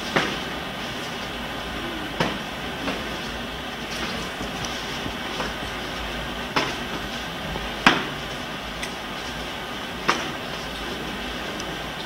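Martial-arts sparring: about six sharp slaps and thuds from kicks, strikes and footwork, the loudest about eight seconds in, over a steady hiss.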